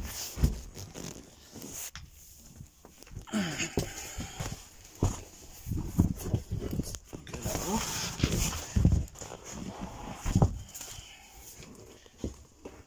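Handling noises as a padded seat lid is moved and opened over a shower tray: a string of irregular knocks and low thumps, with a few short wordless voice sounds from the person doing it.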